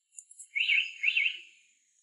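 A bird calling: two quick warbling chirps, about half a second apart.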